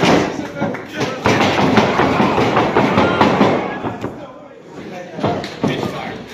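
Thuds of wrestlers' bodies hitting the ring mat, a sharp one at the start and more around five seconds in, over shouting voices in a hall.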